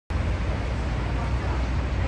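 Steady street traffic noise: a constant low rumble with a hiss over it.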